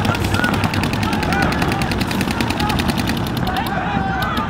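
Paintball markers firing in fast, steady streams, many shots a second, with no letup.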